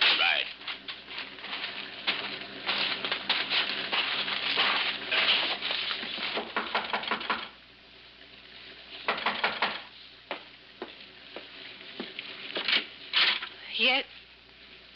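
Radio-drama sound effects: a car engine idling under a dense run of rapid clicking and rustling noise, which stops suddenly about seven and a half seconds in. A few separate knocks and short sounds follow.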